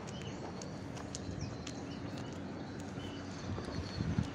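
Outdoor street ambience: a steady low rumble with scattered short, high chirps and faint clicks.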